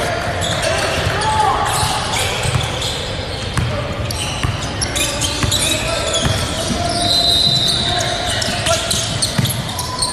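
Basketball game play in a gym: a ball bouncing and short knocks on the court under a steady layer of voices, echoing in a large hall.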